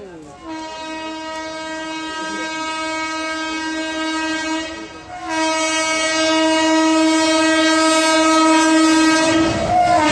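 The horn of the locomotive hauling the 12019 Howrah–Ranchi Shatabdi Express sounds two long blasts, the second louder. Near the end its pitch drops as the locomotive draws alongside, and the rumble of the passing train rises.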